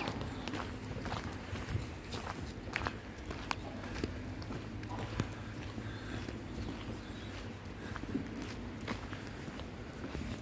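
Footsteps on a wet tarmac path, a run of irregular short scuffs and taps over a steady low background rumble.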